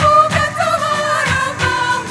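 Choir singing in harmony over a steady beat of about three beats a second.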